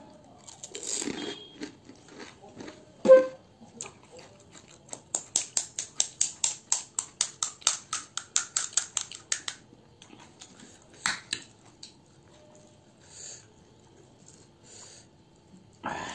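Crisp panipuri (puchka) shells crunching in the mouth as they are bitten and chewed. A loud crack comes about three seconds in, then a quick, even run of crunches, about five a second, for some four seconds, and one more sharp crack a little later.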